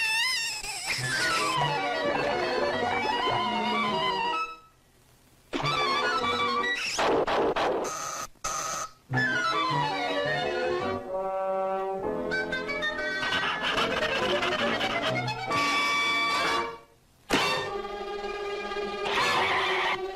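Orchestral cartoon underscore led by brass, full of quick rising and falling slides. It breaks off twice, for about a second each time, before starting up again.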